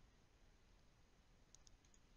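Near silence, with a few faint computer mouse clicks near the end.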